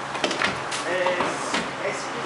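A few sharp knocks and clicks, with brief indistinct voices in between.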